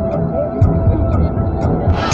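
Opening-show soundtrack through a large PA: a low throbbing pulse with a short clock-like tick about twice a second. Near the end, fuller music comes in.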